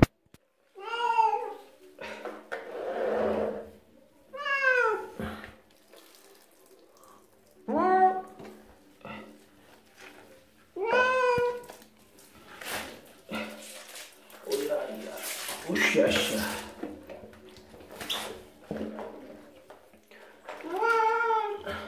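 A wet cat meowing four times, a few seconds apart, each meow rising then falling in pitch, while being lathered in a basin of soapy water. Splashing and sloshing of water sounds between the meows.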